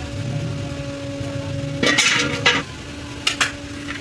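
Metal skimmer ladle clinking and scraping against a large metal cooking pot, with a few sharp strikes about two seconds in and again near the end, over a steady low hum.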